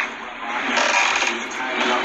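A UK rapper's freestyle over a beat, playing from computer speakers. It sounds thin, with no bass, as picked up by a phone microphone.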